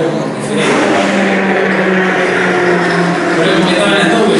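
Racing car engine noise from the circuit, a loud steady drone holding one pitch for about three seconds.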